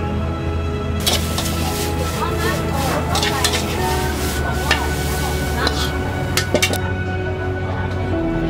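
Background music, with food sizzling in a wok and a metal spatula clinking against it from about a second in until shortly before the end.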